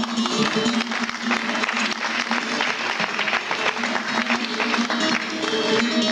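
Audience applause over a solo bağlama, a low note still ringing underneath; the clearly plucked bağlama lines come back through near the end.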